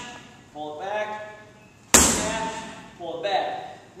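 A sledgehammer slamming down once onto a tractor tire, a sharp hit about two seconds in that dies away over about a second.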